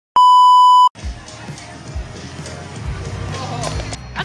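An edited-in test-tone beep, a steady 1 kHz tone under TV colour bars, sounds loudly for just under a second and cuts off sharply. It is followed by outdoor background noise with music and scattered low thumps.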